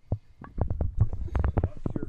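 Handling noise from a handheld camera being moved: a quick, irregular run of soft knocks and rustles with a low rumble.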